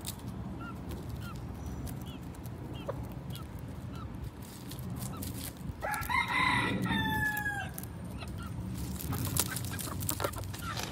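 Chickens clucking softly with short calls about every half second, then a rooster crows once about six seconds in, the crow lasting nearly two seconds and falling in pitch at its end.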